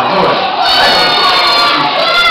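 A group of children shouting together in one loud, drawn-out cheer, starting about half a second in. It is a school group answering as its name is called out.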